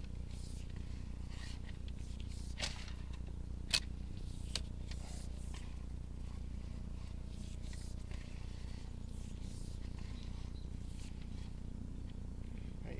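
A steady low hum with scattered faint clicks and ticks; one sharper click comes a little under four seconds in.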